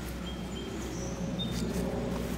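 Quiet outdoor background: a steady low rumble with a few faint, brief high chirps of birds.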